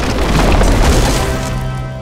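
Cartoon sound effect of the fallen coral being pulled free: a loud, deep rumbling crash that peaks about half a second in and then fades. Music comes in under it during the second half.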